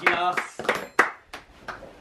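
A few sharp, irregular knocks and clicks, the loudest about a second in, with brief voices at the start.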